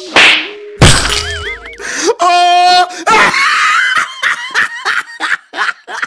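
Edited-in cartoon comedy sound effects: a whoosh, then a heavy crash-and-smack hit about a second in, followed by wobbly boing-like tones and a quick stepped tone. After that comes a long wavering, wailing cry.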